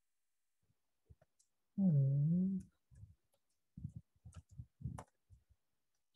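A man's short hummed 'mm' about two seconds in, then computer keyboard keys typed in a quick irregular run of about a dozen clicks as a terminal command is entered.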